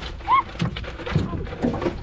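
Knocks and thumps of handling on a small aluminium boat around an open cooler, with one short high squeal that rises and falls about a third of a second in.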